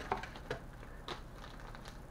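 Faint handling noise: a few light clicks and rustles of a plastic bait package being lifted out of the tackle box.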